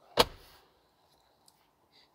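A 2022 Ram 1500's centre console lid shut once with a single sharp clunk, which dies away quickly.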